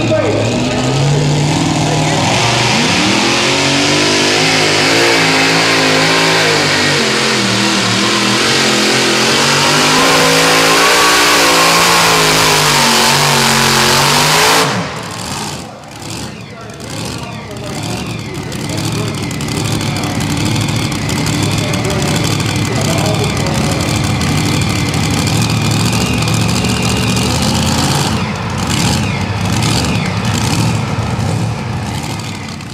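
Supercharged engine of a modified pulling tractor running at full throttle as it pulls the sled, its pitch wavering up and down. About halfway through the sound drops abruptly and carries on quieter and rougher.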